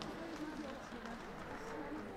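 Indistinct talk from a group of people, with a few faint clicks.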